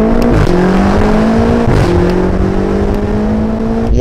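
Car engine accelerating hard, its pitch climbing and dropping briefly at two upshifts, about half a second and two seconds in, then climbing again.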